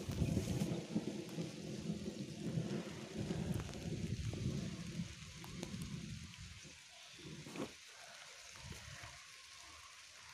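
Low rumbling noise on a phone microphone with scattered rustles and clicks, fading away after about five seconds.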